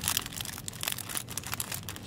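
Crinkling plastic packaging of a nail polish gift set being handled and put back on its display hook: a quick, irregular run of crackles and rustles.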